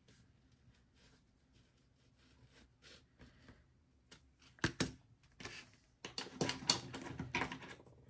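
Small scratches and ticks of a pen-style craft knife cutting around a bat sticker on a sticker sheet. They are faint at first, with a sharp click about halfway and a denser run of scratching and paper rustle in the last two seconds.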